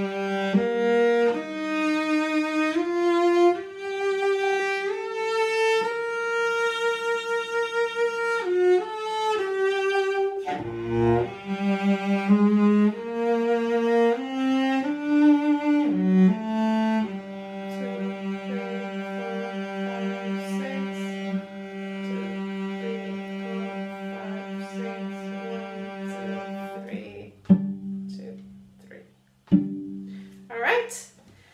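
Cello bowing a slow, lyrical melody note by note at a careful practice tempo, settling into a long held low note over its last ten seconds before the bow stops about three seconds from the end.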